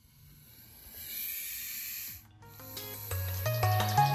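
A western hognose snake hissing: one long breathy hiss of about two seconds that swells and then cuts off sharply. Electronic music starts about two and a half seconds in and builds.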